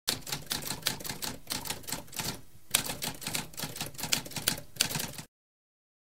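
Typewriter typing: a fast run of keystroke clicks with a short break midway, stopping shortly before the end.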